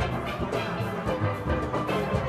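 Steel band playing live: steel pans ringing out a melody over deep bass pans, with a steady percussion beat.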